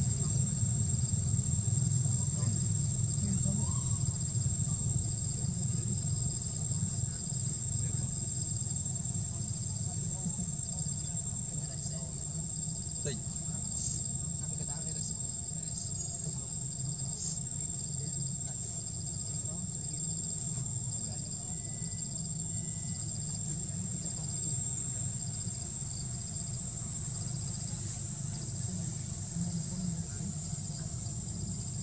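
Forest insects buzzing: a steady high-pitched drone with a softer, evenly repeating chirp beneath it, over a continuous low rumble.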